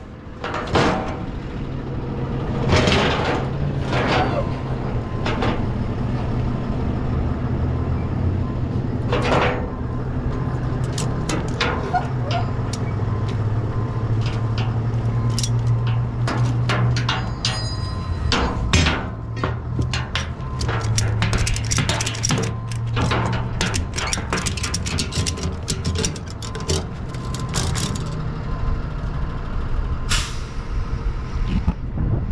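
Car-hauler tie-down ratchet straps being unhooked and handled on the trailer's steel deck: metal hooks and ratchets clank and knock, with a dense run of rattling clicks in the second half, over a steady low hum.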